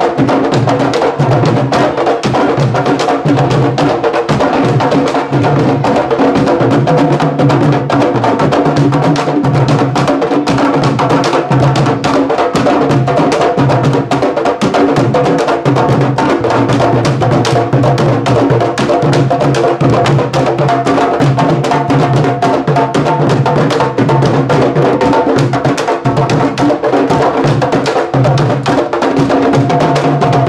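Candombe drum section (cuerda de tamboriles) playing live, a loud, dense, steady rhythm of many barrel drums struck with hand and stick, with sticks clicking on the wooden shells.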